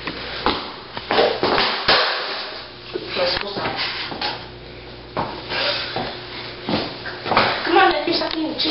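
Low, indistinct voices with scattered sharp knocks and clicks.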